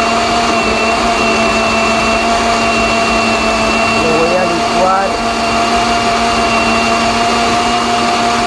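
Osterizer countertop blender motor running, blending chunks of chayote, red onion and garlic in water into a home remedy. It runs at a steady, unchanging pitch throughout.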